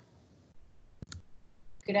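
A single sharp click about a second in, against quiet room tone, followed near the end by a woman starting to speak.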